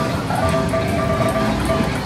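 Arcade din: electronic game music and repeated beeping tones from the arcade machines over a dense, noisy background, with a racing game's engine sounds mixed in.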